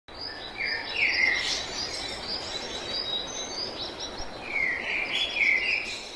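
Birdsong: many short chirps and whistled calls over a steady outdoor background hiss, with louder falling whistled phrases about a second in and again near the end.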